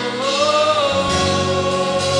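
Gospel worship singing: voices hold one long note that rises slightly about half a second in, over steady accompaniment.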